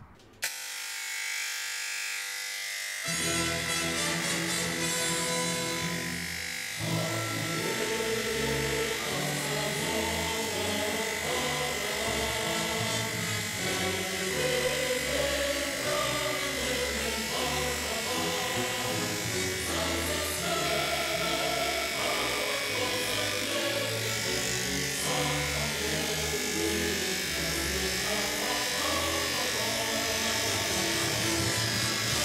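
Instrumental music that builds: a steady held high tone at first, lower layers joining about three seconds in, and a fuller arrangement with a moving melody from about seven seconds on.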